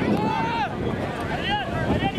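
Several voices shouting and calling out at once from players and the sideline at a rugby ruck, over wind rumble on the microphone.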